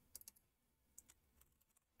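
A few faint computer keyboard keystrokes over near silence: a quick cluster of three clicks, then single keystrokes about a second in and near a second and a half, typing a word into a dictionary search.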